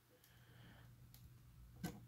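Near silence, then a single faint click near the end as the 8-pin DIP BIOS chip comes free of its socket under an IC extractor.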